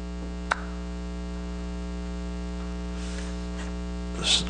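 Steady electrical mains hum in the recording, a buzz with many even overtones, with a single brief click about half a second in.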